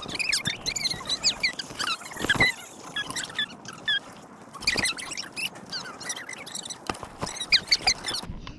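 A phone handled by a toddler: sharp knocks and rubbing on the microphone, over many short, high chirps and squeaks.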